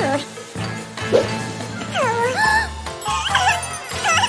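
Background music with short, wordless cartoon-character vocalizations gliding up and down in pitch about halfway through and again near the end.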